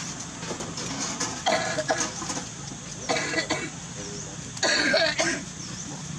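Three short, rough vocal bursts, about a second and a half apart, over a steady low background hum.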